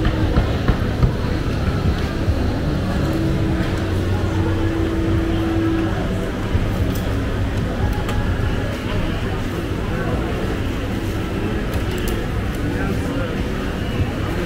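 Night-market crowd ambience: many people talking in the background over a steady low rumble, with a held hum for a few seconds in the first half.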